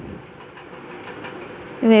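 Sliced onions frying in a steel pan with a steady low hiss as ground spice powders are scraped into it from a paper plate. A voice starts near the end.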